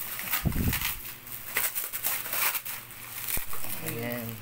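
Clear plastic wrap crinkling and crackling in irregular bursts as it is pulled and peeled off plastic drink bottles, with a dull knock about half a second in.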